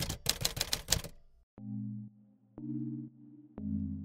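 A typewriter-style typing sound effect, a fast run of keystroke clicks for about a second, then soft low synthesizer tones, a new one about every second, each opening with a click.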